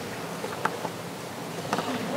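Steady hiss of room tone through the pulpit microphone, with a couple of faint clicks about half a second in and near the end.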